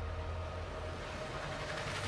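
Steady low drone of aircraft engines, a rumble with a faint even hum over it.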